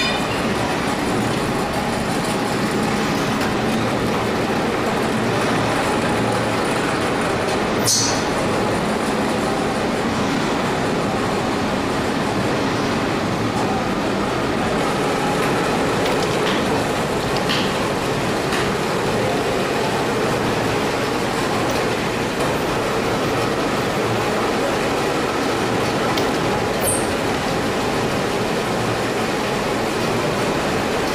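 Steady, dense din of heavy factory machinery running in a machine shop, with a brief high-pitched squeal about eight seconds in and another near the end.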